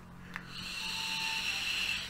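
A long draw on a sub-ohm vape tank: a steady airy hiss with a thin whistle as air is pulled through the Captain X3S tank's airflow and across the coil. It starts just after a faint click, about a third of a second in.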